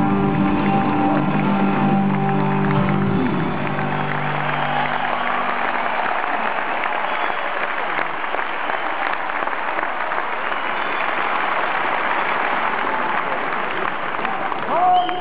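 A rock band's final chord held and ringing out through the arena PA, dying away about five seconds in, as a large arena crowd applauds and cheers, carrying on steadily to the end.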